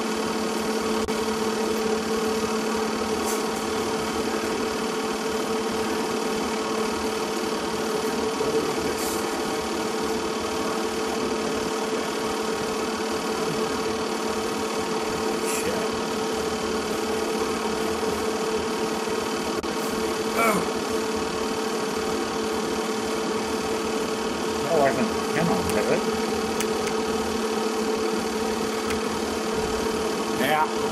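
A steady mechanical hum with two steady tones, one low and one about twice as high, running at an even level, with brief faint voices about two-thirds of the way through.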